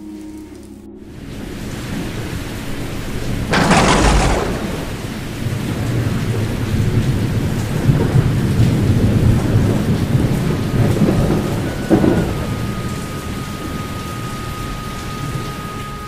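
Thunderstorm: steady heavy rain with a loud thunderclap about four seconds in and a smaller one near twelve seconds.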